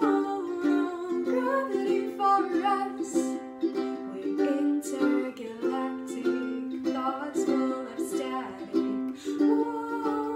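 Ukulele strummed in a steady rhythm of chords, with a woman's voice singing along.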